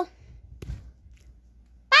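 A single soft thump about a third of the way in, over faint low room hum; a child's voice ends just as it begins and a child says "Bye!" at the very end.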